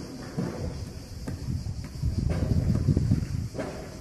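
Construction-site noise: an uneven low rumble with a few scattered knocks, loudest in the second half.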